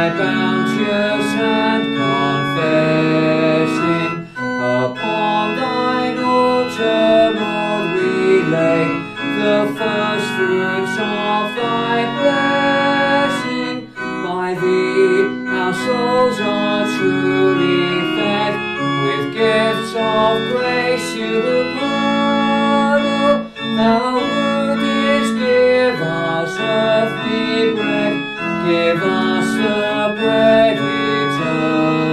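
Organ playing a harvest hymn tune in held chords that change every second or so.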